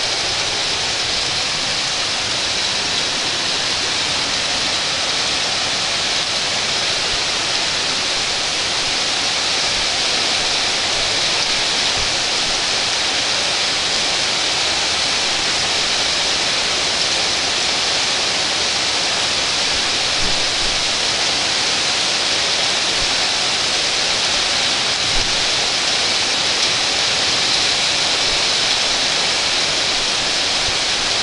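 Heavy rain falling steadily in a thunderstorm, a dense, even hiss with a few faint sharp taps.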